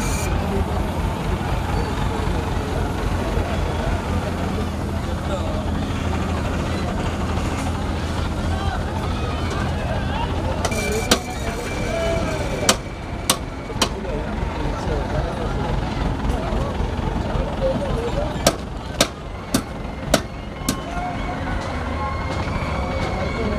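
Mobile crane's engine running steadily while it holds a load on its hook, with background voices. Several sharp knocks come about halfway through and again near the end.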